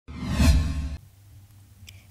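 A whoosh transition sound effect with a deep low boom, lasting about a second, for an animated logo bumper.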